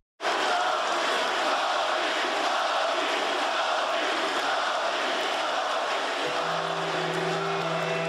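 A large crowd cheering in a steady, dense wash, cutting in suddenly after a split second of silence. A low held musical note comes in underneath about six seconds in.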